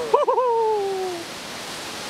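A person's high, drawn-out "ooh" exclaimed in alarm, wavering at first and then sliding slowly down in pitch, over the steady rush of the river below.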